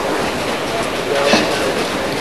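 Steady murmur of an arena crowd and background voices, with a brief louder sound a little past halfway through.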